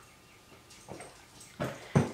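A woman sipping coffee from a ceramic mug: soft sips and swallows in the second half, then a short sharp mouth sound near the end.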